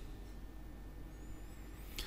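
Faint room tone from the recording microphone, with no speech or distinct event, only a faint thin high whine in the second half.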